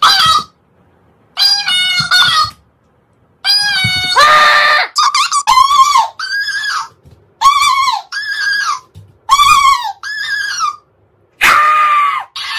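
A man letting out short, high-pitched shrieks and yells, with a talking cactus mimic toy repeating them back in a squeakier, sped-up copy of his voice. The cries come in bursts with brief silent gaps between them.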